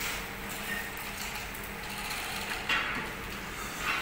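Metal rattling and scraping from a wheeled foundry ladle cart being pushed across the floor, in short irregular bursts over a steady low workshop hum.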